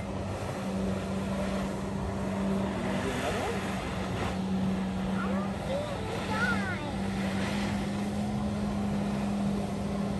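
Motorboat engine running steadily out on the lake, heard as one even low hum that comes up about half a second in and holds.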